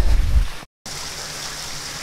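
Low rumble, then a brief silent gap at a video cut, then a steady, even hiss of outdoor background noise with no distinct events.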